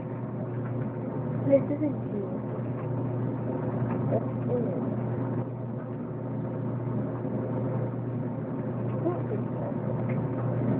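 A steady low hum with faint, indistinct voices.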